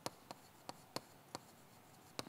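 Chalk writing on a chalkboard: about five short, faint taps and scratches as the strokes of a word are made.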